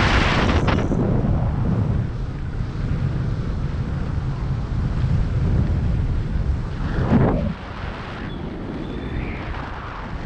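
Airflow buffeting the camera's microphone during a paraglider flight: a steady low rumble of wind noise, with a louder gust in the first second and another about seven seconds in.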